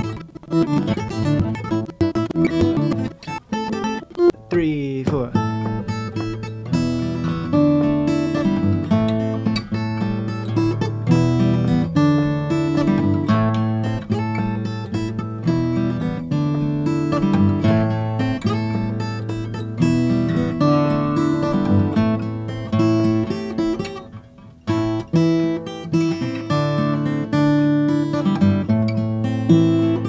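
Acoustic guitars played fingerstyle: a repeating desert-blues pattern with a thumbed bass line under picked treble notes. The first few seconds are sped up, ending in a brief pitch glide about four seconds in, and the playing dips briefly about 24 seconds in.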